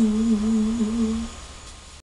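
A woman humming one long, slightly wavering note, unaccompanied, that stops a little over a second in.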